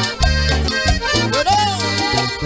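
Live Latin dance band music, an instrumental stretch with accordion over a steady bass and percussion beat.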